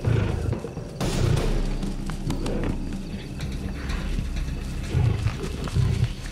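Lions growling during an attack on a bull hippo, with several deep growls: near the start, just after a second in, and twice near the end. Documentary music runs underneath.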